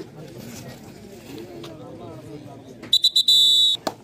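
Referee's whistle: a few quick short toots about three seconds in, then one steady blast lasting most of a second. Faint voices of players and crowd lie underneath.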